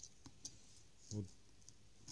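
A few faint clicks in quick succession from a snap-off utility knife as its blade is slid out.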